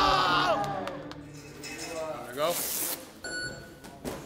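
A man's loud celebratory shout over crowd noise fades out within the first half second. Near the end come a short whoosh and a brief ringing tone.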